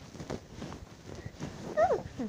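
A short squeaky voice-like call that falls in pitch near the end, over scattered soft knocks.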